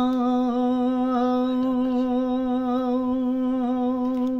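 An elderly man's voice holds one long, steady sung note with a slight waver: the drawn-out end of a line of a Gojri bait, a folk verse sung without accompaniment.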